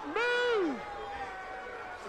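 A man's shouted call from the pitch: one call about half a second long, near the start, that rises and then drops away, over crowd noise.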